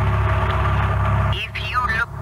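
Steady low drone of a tour boat's engine. A voice starts speaking over it near the end.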